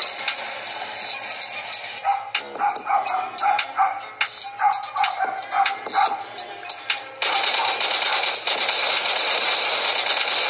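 Rap music video soundtrack: a break of many sharp cracks, gunshots in the scene, over a thin wavering beat, then the full beat cuts back in loud at about seven seconds.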